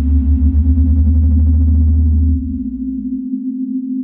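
Dark ambient synthesizer drone: a deep flickering bass under a steady low hum. A fainter upper layer cuts off about halfway through, and the bass drops out a little after that.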